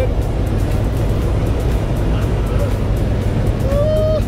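Steady loud drone of a small jump plane's engine and airflow heard inside the cabin, with background music over it. A voice calls out near the end.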